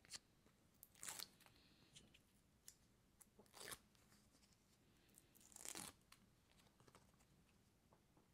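Faint peeling of release-liner backing off foam adhesive tape: three short tearing rips, about a second in, in the middle, and near six seconds, with a few small clicks of paper being handled.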